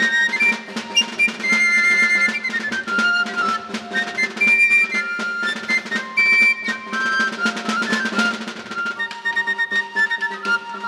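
Basque txistu band playing dance music: high txistu pipes carry a quick melody over a steady drum beat.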